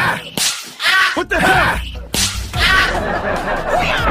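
Cartoon fight sound effects: a few sharp swishing whooshes and hits, with short grunting voice sounds between them.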